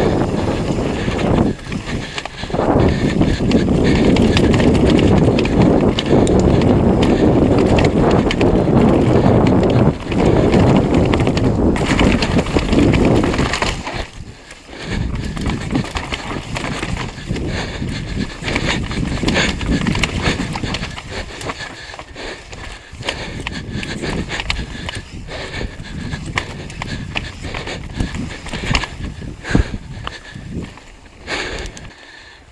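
Downhill mountain bike ridden fast on a dirt trail, heard from a camera on the bike or rider: a loud rush of wind on the microphone with tyre and frame noise. About fourteen seconds in, the rush drops away and a rapid clatter of knocks follows as the bike rattles over rocks and roots.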